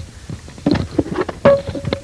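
A quick run of knocks and thunks, one of them ringing on with a short steady tone near the end: a handling or footstep sound effect as the jack-in-the-box is fetched.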